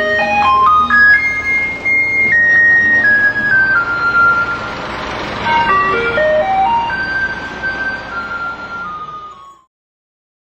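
An electronic truck jingle: a melody of single clean notes over a steady low accompaniment, with a quick rising run, slower falling notes, then another rising run, cutting off suddenly near the end. It is the tune a Taiwanese garbage truck plays to call residents out with their rubbish.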